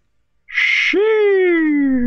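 A long, drawn-out cry from the episode's soundtrack that starts about half a second in, just after a short hiss, and slides slowly down in pitch.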